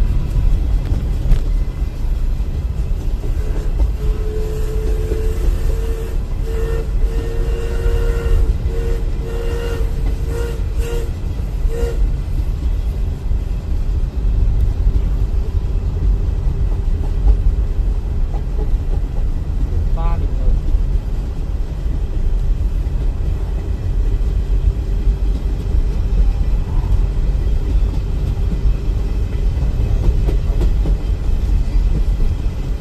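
Steady low rumble of a car driving, heard from inside its cabin, with the train running alongside mixed in. From about four to twelve seconds a pitched sound comes and goes in short pieces over the rumble.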